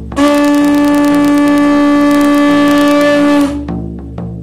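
Conch shell trumpet (caracol) blown in one long, steady note of about three seconds that stops sharply. A drum beats steadily under it, a few strokes a second.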